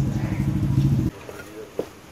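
A motor vehicle's engine running close by, a loud low steady sound that cuts off abruptly about a second in.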